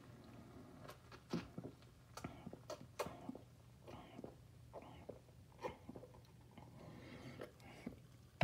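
A person sipping and swallowing a glass of carbonated soda: faint, short mouth clicks and gulps scattered every half second or so.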